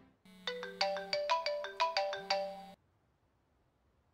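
Mobile phone ringtone: a quick melody of about a dozen bright notes over a held low tone, stopping abruptly after about two and a half seconds as the call is answered.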